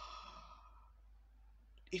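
A woman's audible breath, a soft sigh lasting about a second.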